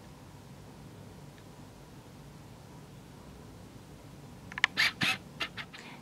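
Quiet room tone, then near the end a quick, irregular run of sharp clicks and squeaks as a patent-leather handbag is handled.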